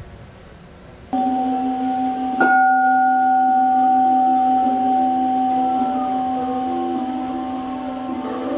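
A large bowl-shaped temple bell ringing with a deep, long hum that starts suddenly about a second in. It is struck again about two and a half seconds in, which brings out a higher ring, and the sound then fades slowly.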